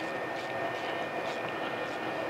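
Steady background hum with a few faint, light metallic clicks as the level plug is turned back into the final drive hub with an Allen socket.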